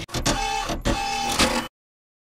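Short sound effect of an animated news ident: two similar noisy bursts, each carrying a steady tone, that cut off suddenly into dead silence about two-thirds of the way through.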